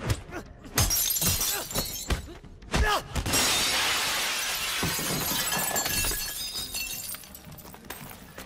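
Fight-scene punch impacts, then about three seconds in a pane of glass smashes, and the falling shards tinkle down and fade over several seconds.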